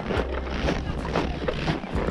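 Wind buffeting the camera microphone, a steady low rumble with irregular rustling over it.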